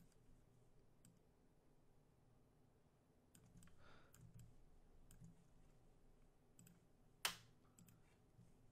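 Near silence with a few faint clicks of a computer mouse and keyboard, the sharpest a single click about seven seconds in.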